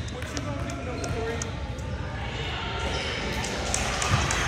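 A basketball bouncing on a hardwood gym floor, with a few separate bounces echoing in the large gym.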